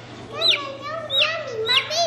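Baby chick peeping close by: three short peeps, each sliding down in pitch, about half a second apart.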